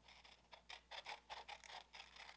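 A string of faint, short snips from small scissors cutting a sheet of paper along a curved line.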